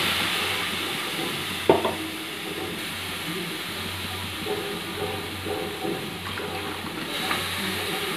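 Milk poured into freshly roasted semolina in a hot pan, sizzling with a steady hiss that is loudest as the pour begins and eases slightly after a couple of seconds. A single sharp click about two seconds in.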